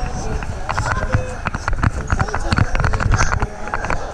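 Irregular thumps and knocks from bouncing on a trampoline, with a body-worn camera jolted on each landing, over voices in the background.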